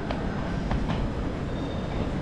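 Steady low rumble of a railway station platform with trains nearby, with a few light clicks.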